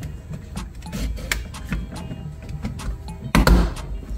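Plastic trim and dash cam housing at the rear-view mirror being pushed into place by hand: a run of small clicks and knocks, with a louder knock a little over three seconds in.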